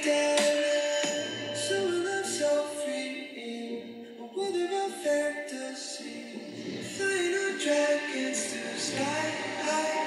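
A pop song with singing, played through a pair of small full-range speakers driven by a TI TAS5768 class-D amplifier board, with little deep bass.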